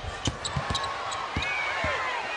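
Game sounds from a hardwood basketball court: a quick run of low thumps from the ball and players' feet during a rebound scramble, with short high sneaker squeaks and voices in the arena behind.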